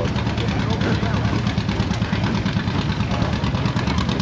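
Steam traction engine running steadily with a fast, even beat over a low rumble, belted to a threshing machine at work.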